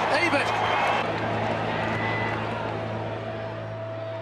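Stadium crowd cheering a goal, with a few voices heard at the start, then an even roar that slowly dies away.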